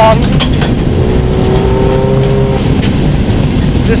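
Subaru STI rally car's engine running hard at around 80 mph, heard from inside the cabin, with loud steady road and gravel noise from the tyres on a dirt road.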